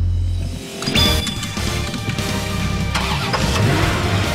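A police pickup truck's engine running, mixed with background music.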